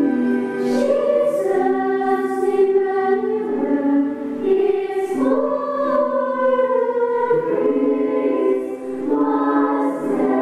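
A small women's choir of religious sisters singing a Christmas song in several parts, with long held notes.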